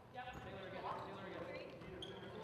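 Indistinct voices of players and spectators echoing in a gymnasium.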